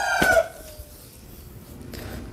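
A rooster crowing: the tail of one long crow, its pitch sagging as it fades out about half a second in.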